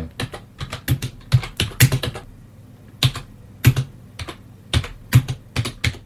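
Keys on a computer keyboard being typed in quick irregular runs of clicks, with a pause of about a second midway.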